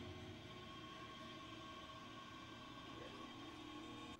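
Faint, steady drone of a TV drama's soundtrack playing quietly, a few held tones and no clear beat.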